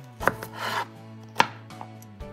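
Kitchen knife slicing baby corn lengthwise on a cutting board: a knock of the blade on the board, a short slicing scrape, then a sharper, louder knock about a second and a half in.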